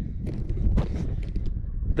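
Wind rumbling on the microphone of a hand-held camera, with scattered short rustles and handling clicks.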